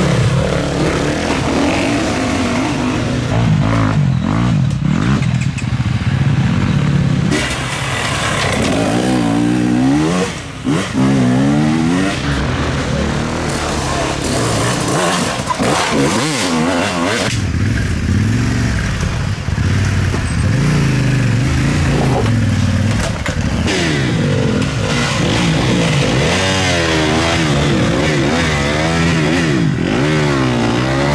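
Enduro dirt bike engines revving hard at close range, the pitch climbing and falling again and again as the throttle is worked, with a brief dip in loudness about ten seconds in.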